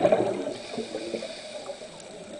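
Gurgling of air bubbles underwater, loudest right at the start and dying down within about half a second to fainter, uneven bubbling.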